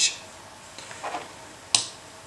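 Mouth noises from a man pausing between sentences: a short hissy breath at the start and a sharper click-like one near the end, with faint room tone between.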